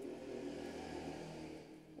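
Faint steady background hum with several held low tones and a light hiss, fading slightly near the end.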